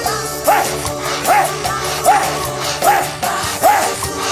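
Live worship music with a steady beat, over which a short rising-and-falling vocal cry repeats evenly, a little more than once a second.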